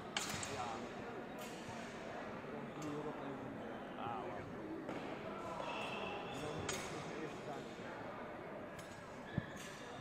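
Background chatter of a crowd echoing in a large sports hall, with a few scattered knocks and one sharp low thump near the end.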